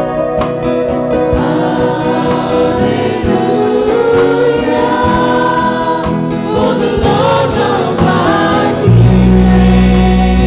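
Live worship song: a woman's lead vocal with backing singers over acoustic guitar. About nine seconds in, a loud low sustained note comes in under the singing.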